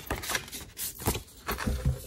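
Thick white cardstock handled against a plastic scoring board: a few short taps and paper scrapes as the scored sheet is slid off the board and folded along its score line.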